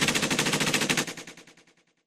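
A machine-gun sound effect at the end of a song: a fast, evenly spaced rattle of shots that fades out about a second and a half in.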